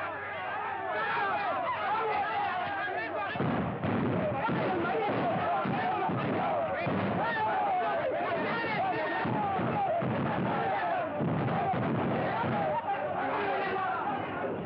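Many men shouting and yelling at once. From about three seconds in, repeated gunfire cracks through the yelling. The sound is dull and narrow, as on an old 1930s film soundtrack.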